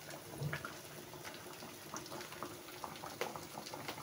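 Food cooking on the stove: quiet bubbling and simmering, with many small scattered pops and crackles.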